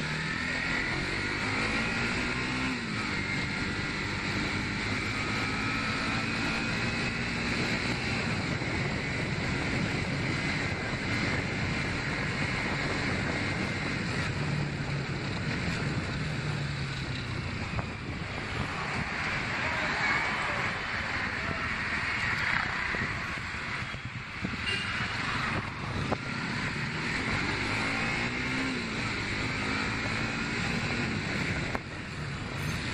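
Bajaj Pulsar NS motorcycle engine running while riding, its pitch rising and falling a few times with the throttle, over a steady rush of wind and road noise.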